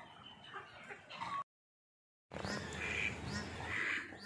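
A flock of ducks quacking on and off. The sound cuts out completely for about a second in the middle, then comes back with a busier run of calls.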